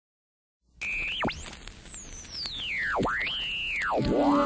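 Opening of an experimental avant-garde recording: after a moment of silence, a single pure tone enters and swoops steeply in pitch. It holds briefly, dives sharply, climbs to a very high peak that slowly falls away, then rises to a held middle pitch and plunges again near the end, over a faint hiss.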